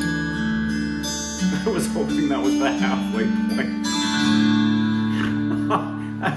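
Closing passage of a Carnatic progressive rock piece, played by a band with strings: long held chords under picked electric guitar notes.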